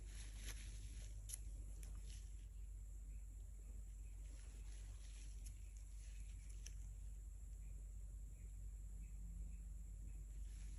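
Quiet room tone: a steady low hum with a few faint, soft ticks and scratches scattered through it, thickest near the start and again mid-way.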